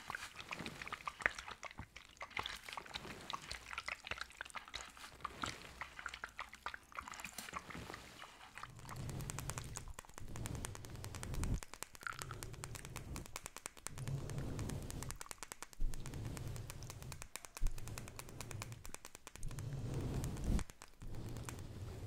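Liquid squeezed from a bottle dripping and crackling on a plastic bag wrapped over a microphone, then makeup brushes swept over the bare microphone grille in about seven slow strokes during the second half.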